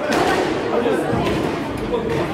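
Background chatter of spectators' voices echoing in a squash court, with a few sharp knocks of the squash ball being struck during a rally.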